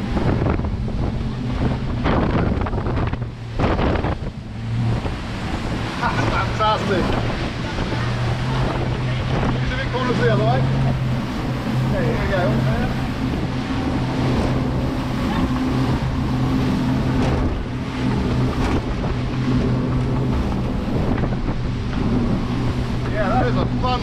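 Twin Mercury Verado 350 outboard engines running at speed while the boat is put through turns: a steady engine hum under rushing water from the hull and wake, with wind buffeting the microphone. The sound dips briefly a few seconds in.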